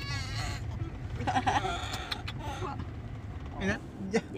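Steady low rumble of a car cabin on the move, with a few short, high, quavering calls over it: one about the first half second and another near the end.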